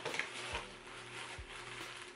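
Faint rustling of a gift wrapping being handled as a small plush toy is pulled out, with a couple of soft knocks.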